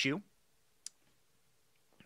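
A man's spoken word trails off, then near silence with a single short, sharp click just under a second in.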